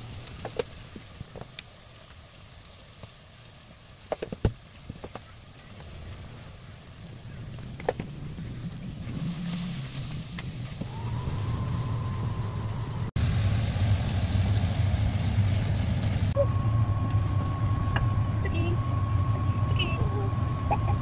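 A spoon clicks and knocks against a plastic food tub and a metal cooking pot as a paste is scooped in and stirred. A steady low hum then builds up and runs on, with a thin high tone added near the end.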